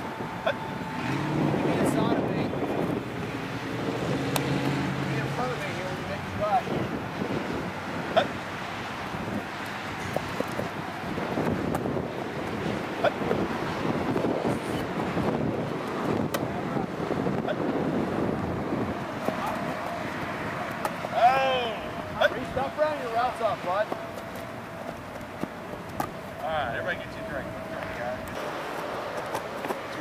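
Outdoor field ambience: indistinct voices of boys and a coach talking at a distance, with a brief louder exchange about two-thirds of the way through, over a steady background rumble.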